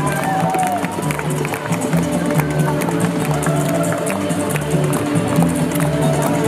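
Live string-band music: an upright double bass plucking steady low notes, a fiddle sliding between notes near the start, and a washboard scraped and tapped with a small cymbal mounted on it, making a quick run of clicks throughout.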